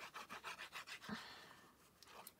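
Sponge tip of a Tombow liquid glue bottle rubbing across cardstock in quick zigzag strokes, a faint scratchy scraping that fades away in the second half.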